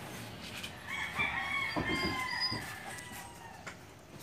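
A rooster crowing once, one long call of about two seconds beginning about a second in, with a few soft knocks during it.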